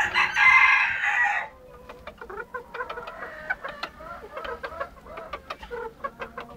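Chickens in a cage: a rooster crows for about a second and a half at the start, then hens keep up short clucking calls.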